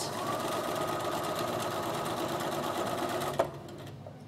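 Bernina sewing machine running steadily as it straight-stitches along a folded fabric edge with an edge-stitch foot. It picks up speed at the start and stops shortly before the end.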